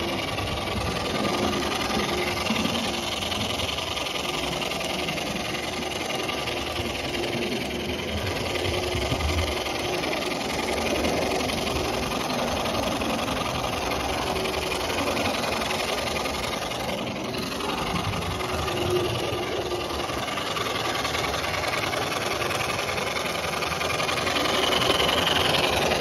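Gauge 1 electric model tram engine running along the track under power: a steady mechanical running noise of its motor and wheels on the rails.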